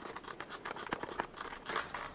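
Fingernail picking and scratching at an adhesive seal sticker on a hard plastic box: a quiet, rapid run of small clicks and scratches.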